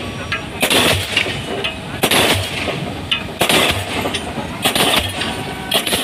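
Diesel pile hammer driving a concrete spun pile: a steady series of heavy blows, a sharp bang about every 1.3 seconds, five in all.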